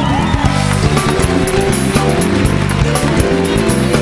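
Live band music: electric guitar and bass over a drum kit with cymbals, with a few sliding, bending notes near the start.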